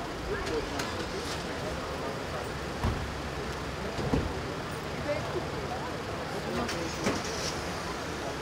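Murmur of voices around a vehicle, with a steady low vehicle rumble underneath. Sharp knocks and clicks break through, the loudest about three seconds, four seconds and seven seconds in.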